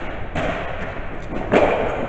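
Two thumps, the louder one about one and a half seconds in, echoing in a large hall: a flyball box being struck by the dog as it turns on the box's pedal.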